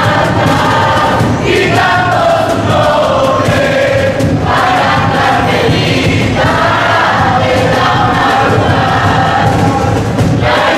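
A large group of women and men singing a song together, in phrases of a few seconds with brief breaks between them.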